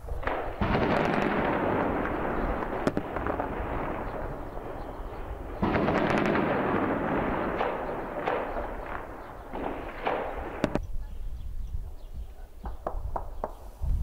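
Two heavy explosions, about half a second and just under six seconds in, each followed by a long rumbling echo among the buildings. Single gunshots crack between them, and a short run of rifle shots comes near the end.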